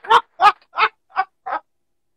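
A man laughing heartily, a run of about five short "ha" pulses that grow weaker and trail off.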